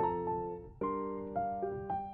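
Background piano music: soft piano chords struck and left to fade, with a new chord just under a second in and single notes added near the end.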